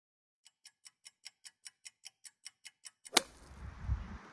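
A fast, even ticking, about five ticks a second, growing louder. It ends in a single sharp click, after which a low rumble of wind on the microphone comes in.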